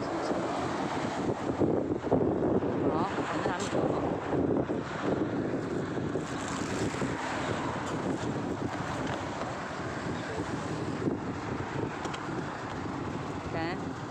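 Wind buffeting the microphone, mixed with the steady noise of road traffic passing.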